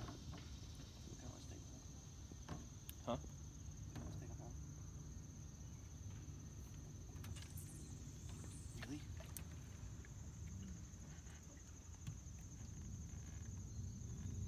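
Insects chirring in a steady high-pitched drone, over a low rumble, with a few faint clicks scattered through.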